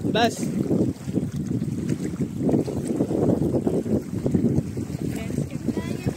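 Wind buffeting a phone's microphone: a loud, rough rumble with no break, over shallow sea water.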